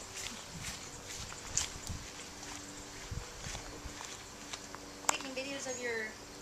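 Footsteps and brushing through grass as a person carries a handheld camera across a yard, with soft, irregular thuds and handling noise. About five seconds in there is a sharp click, followed by a short falling voice.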